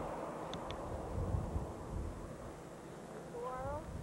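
Low rumble of wind on the microphone, with two faint ticks about half a second in and a short rising voice-like call near the end.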